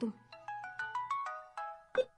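Mobile phone ringtone playing a quick melody of short stepped beeping notes. It stops shortly before the end, followed by a sharp click as the call is picked up.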